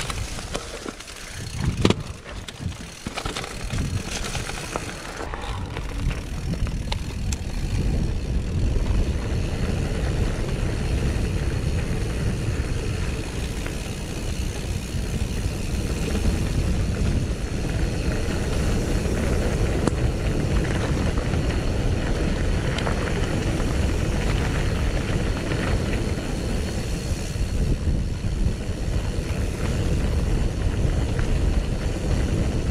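Mountain bike rolling fast downhill on a dirt road: a steady rush of tyre and wind noise, with a few sharp knocks from the bike over rough ground in the first seconds.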